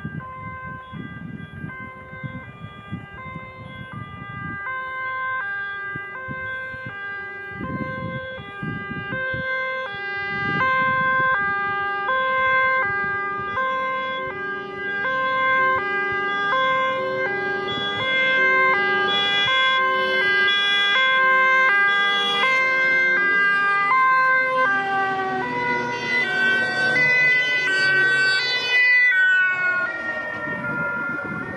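Several fire trucks' two-tone sirens sounding together out of step, growing louder as the convoy approaches, with diesel truck engines rumbling underneath. Near the end the siren pitch drops as the trucks pass close by.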